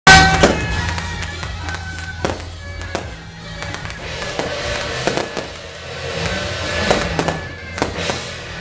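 Firecrackers popping in scattered, irregular cracks, the loudest right at the start, over a temple-procession band's sustained wind-instrument notes and low drone.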